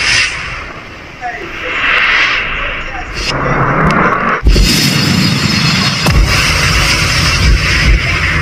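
Loud intro soundtrack of dense rushing noise, with deep booms from about halfway through.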